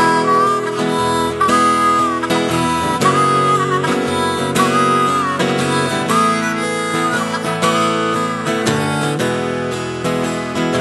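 Harmonica solo over a strummed acoustic guitar: short held phrases with notes bent up and down, an instrumental break between verses of a country-blues song.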